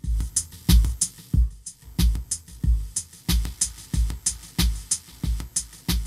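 Homemade microcontroller-based drum machine playing an electronic beat through loudspeakers: deep kick-drum thumps about three a second with short, crisp hi-hat ticks between them.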